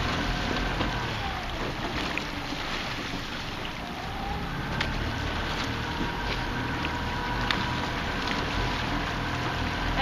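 A coaching launch's outboard motor running steadily, with wind on the microphone and a couple of faint clicks a few seconds apart.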